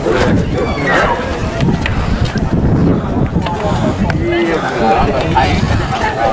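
Voices of several people talking around the camera, words unclear, over a steady low rumble.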